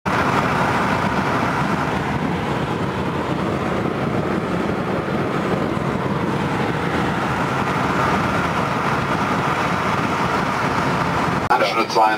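Steady engine and tyre noise heard inside the cabin of a car moving at speed, cutting off abruptly near the end.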